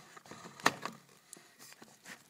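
Handling noise close to the microphone: a sharp click about two-thirds of a second in, the loudest sound, followed by a smaller click and light knocks and rustles.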